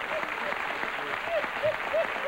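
Studio audience applauding, with a person's repeated laughter over the clapping.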